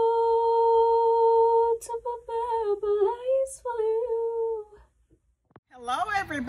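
A woman singing solo and unaccompanied: one long steady note held for about two seconds, then a few short wavering phrases that end about five seconds in, followed by a brief silence.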